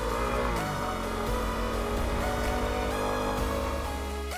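Electronic background music over a Yamaha WR250R's single-cylinder engine running steadily while the dirt bike rides along a gravel road.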